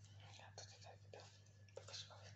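A person whispering softly in short breathy bursts, over a low steady hum.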